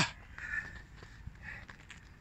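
Faint footwork steps of a boxer moving on a rubber running track, with two short soft hisses, about half a second in and again a second later.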